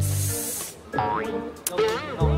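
Post-production comedy sound effect: a sudden burst of hiss over a low bass note, then a short cartoonish musical sting.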